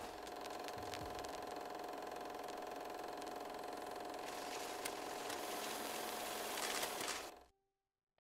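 Film projector running: a steady mechanical whir with a hum and scattered crackling clicks, which cuts off suddenly near the end.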